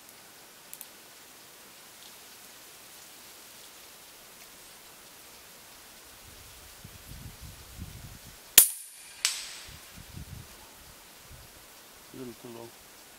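A single shot from a Huben K1 .22 PCP air rifle firing a cast lead slug: one sharp crack about two-thirds of the way in, followed about half a second later by a fainter ringing crack as the slug strikes the steel target. Low bumps of the rifle being handled come just before and after the shot.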